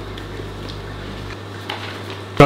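Steady low hum with an even hiss and a few faint ticks: room tone.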